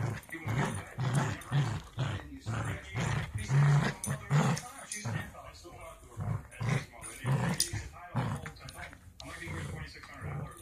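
Small dog growling in short repeated bursts, about two a second, while biting and tugging at an object held in a hand.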